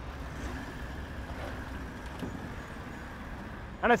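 Toyota LandCruiser 79 series engine running at low revs with a low, steady note as the truck crawls up a rock climb in low range with both diff lockers engaged.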